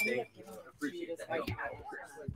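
Indistinct voices of other people talking in the room, with a low thump about one and a half seconds in as a desk microphone is handled.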